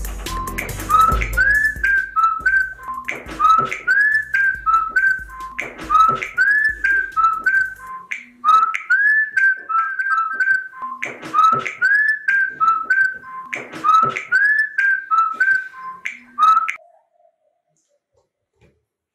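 Mobile phone ringtone: a short whistled melody repeating about every two and a half seconds. It cuts off suddenly shortly before the end.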